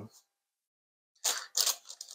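Baking paper rustling under hands pressing out pizza dough: a short scratchy stretch in the second half, after a moment of silence.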